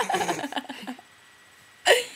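A girl laughing in quick choppy bursts for about the first second, then a short, sharp burst of voice right at the end.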